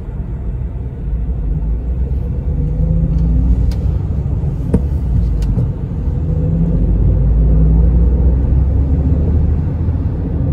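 Car's engine and tyre noise heard from inside the cabin while driving: a low steady rumble, with the engine note swelling twice as the car speeds up. A few faint clicks come near the middle.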